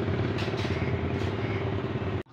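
A vehicle engine idling steadily nearby, an even hum with a held tone.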